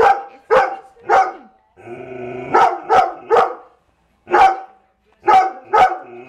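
A dog barking about nine times, in three quick groups of three, with a steady tone sounding under the second group.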